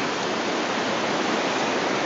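Steady, even rushing noise of fast-flowing floodwater, with no changes.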